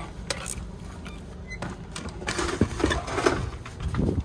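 Hands rummaging through a fabric backpack's pockets: rustling with scattered clicks and knocks.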